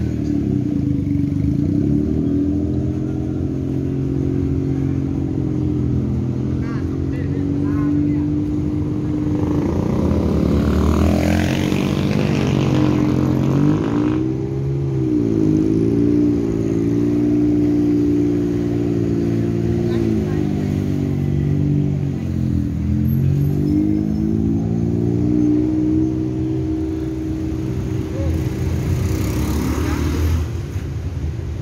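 Busy road traffic with tuk-tuks, motorcycles and cars: a steady low engine drone whose pitch dips and comes back up twice as engines rev, and a vehicle passing close about ten seconds in.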